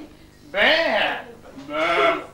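A performer bleating like a sheep: two drawn-out, wavering "baa" calls, the second starting near the end.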